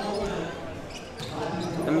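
A basketball being dribbled on a hardwood gym court.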